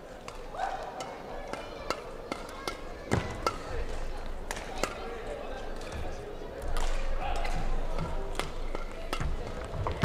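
Badminton rally: rackets striking the shuttlecock in a string of sharp, irregularly spaced cracks, echoing in a large sports hall, over a murmur of voices.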